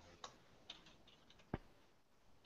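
Near silence broken by a handful of faint, short clicks, with one sharper click about one and a half seconds in.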